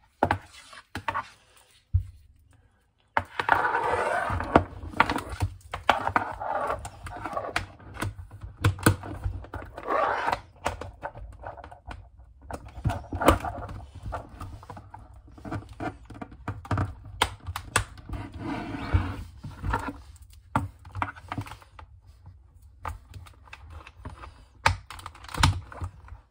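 Hands fitting a chin strap onto a hard plastic football helmet: irregular clicks, taps and knocks of the straps and buckles against the shell, with rustling of the straps in between.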